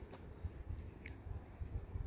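Quiet open air with a faint low rumble of wind on the microphone. There is a faint tick just after the start and a brief thin high-pitched sound about a second in.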